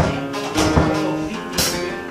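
Acoustic guitar being strummed, chords ringing between sharp strokes, the strongest stroke at the very start.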